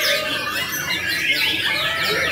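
Several caged white-rumped shamas (murai batu) singing at once in a dense, overlapping chorus of quick whistles and calls that rise and fall in pitch without a break.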